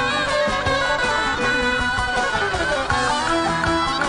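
Live folk band playing an instrumental passage of a slow halay dance tune: violin and bağlama (long-necked saz) melody over a steady beat.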